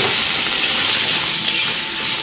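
Shelled shrimp sizzling in hot oil in a wok just after going in, a loud, steady hiss that eases slightly toward the end.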